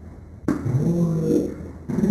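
A person's wordless voice: a hooting "ooh" that starts suddenly about half a second in, slides up in pitch and holds for about a second, with a second one starting near the end.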